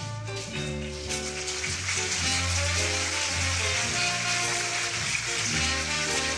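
Orchestra with brass playing the instrumental introduction of the song, over a sustained bass line. A bright, hissing wash joins the upper range about a second in and carries on over the notes.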